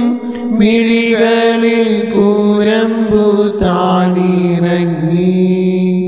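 A solo voice singing a Malayalam devotional hymn in slow, drawn-out melodic phrases with gliding pitch, holding a long note near the end.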